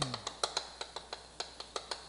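Chalk writing on a chalkboard: a quick, irregular run of sharp taps and clicks as each stroke is put down.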